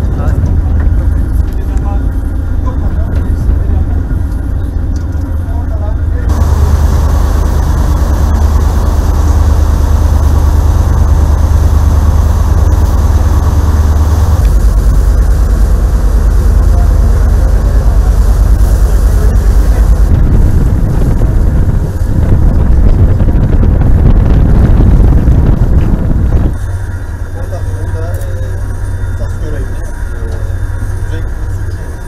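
Loud, steady low rumble of wind buffeting the microphone and vessel noise aboard a ship under way at sea, with indistinct voices faintly underneath. The rumble changes abruptly in character several times.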